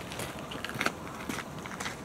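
Footsteps crunching on a gravel path scattered with dry fallen leaves, a few irregular crunches each second.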